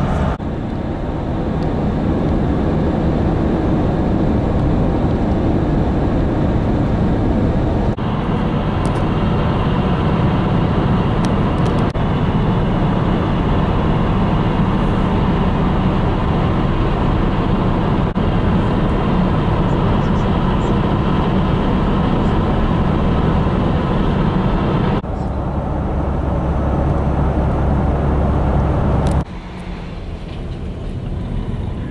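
Steady road and engine noise inside a passenger van's cabin travelling at highway speed. The sound changes abruptly several times, at edit cuts between recordings.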